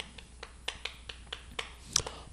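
Chalk writing on a chalkboard: a quick string of light, irregular clicks as the chalk strikes and lifts off the board stroke by stroke.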